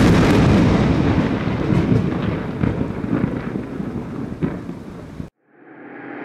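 A thunder-like boom sound effect: a sudden loud crash that rumbles and slowly fades for about five seconds, then cuts off abruptly. A swelling tone rises near the end.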